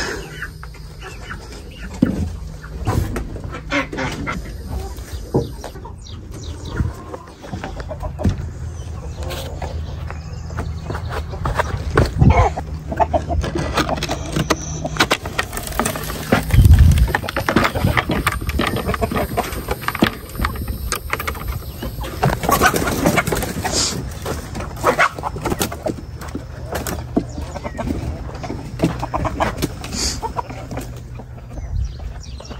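Chickens clucking, with scattered knocks and clatter from handling the wooden coop and its door; one heavy low thump about halfway through.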